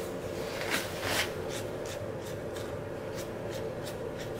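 Screwdriver scraping and turning in the pad-pin plug of a motorcycle brake caliper: two short scratchy rasps about a second in, then fainter scrapes and ticks, over a steady low hum.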